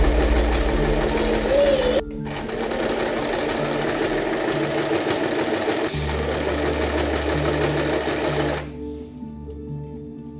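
A light-duty domestic electric sewing machine running, stitching piping cord into a long fabric strip. The machine runs in steady stretches and falls much quieter near the end.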